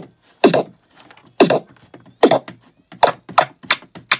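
Circuit-bent Mix me DJ toy beat machine playing its drum-beat pattern while a pitch-bend pot is turned: the hits come closer and closer together, the beat speeding up toward the end.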